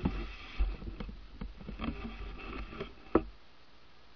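Close knocks and rubbing from the camera being handled, with a low rumble and several sharp clicks, the loudest about three seconds in, after which only a faint steady hiss remains.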